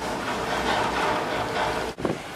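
Steady drone of a ferry's engines and machinery: a low rumble under an even hiss with a faint steady hum.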